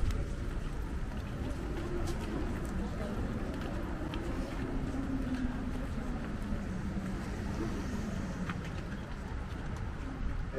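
City street ambience: a steady low rumble of traffic with people talking in the background.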